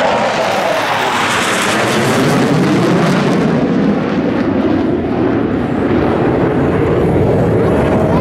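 Four USAF Thunderbirds F-16 Fighting Falcon jets passing over in formation: a loud jet roar. Its high hiss fades after about three and a half seconds as they draw away, leaving a lower rumble.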